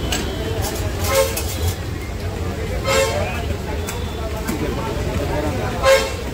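Busy street background: a steady low traffic rumble with three short vehicle horn toots, spread about two seconds apart, over voices.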